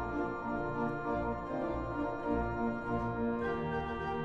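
Pipe organ playing full, sustained chords over a pedal bass line that moves note by note.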